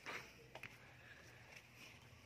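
Near silence: faint outdoor background hiss, with a couple of faint ticks about half a second in.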